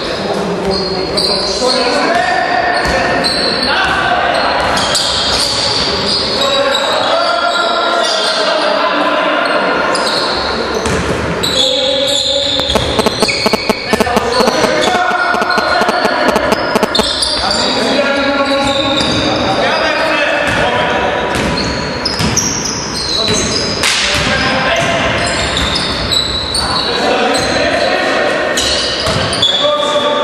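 Basketball game sounds in a gym hall: players' voices and shouts over the ball bouncing on the court floor, with a run of sharp knocks about midway.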